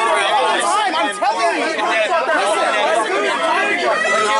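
Several people talking at once, their voices overlapping so that no single speaker stands out.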